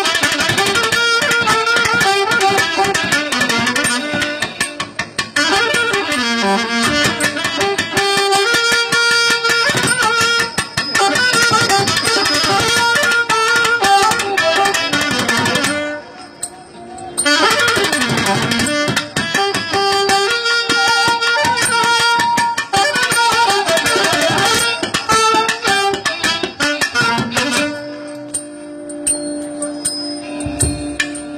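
Live South Indian instrumental ensemble music: the thavil drum keeps up quick strokes under a fast, ornamented melody line. The sound thins out briefly about halfway through, and near the end a long note is held.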